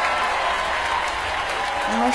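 Recorded applause, steady clapping played as a live-stream sound effect, with a faint held tone under it. A voice comes in right at the end.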